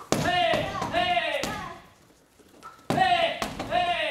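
Taekwondo kicks slapping into a freestanding heavy bag, each group of kicks with loud shouted kihaps: one burst at the start and a second about three seconds in.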